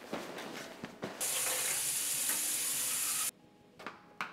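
Water running hard from a tap, an even hiss that starts abruptly about a second in and cuts off suddenly about two seconds later. Before it there is a second of rustling, and near the end a short click.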